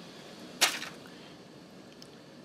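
A single brief, sharp handling sound about half a second in, a quick click or brush against a faint shop background.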